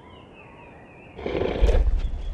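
Cartoon Tyrannosaurus rex sound effect: a loud, deep, rumbling roar that comes in about a second in.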